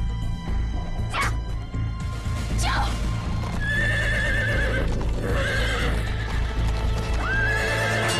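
Horses galloping, hooves clip-clopping, with a horse whinnying several times in the second half, over a low dramatic film score.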